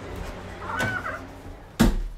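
A single short, high-pitched cry that rises and falls, about a second in, followed near the end by a loud knock.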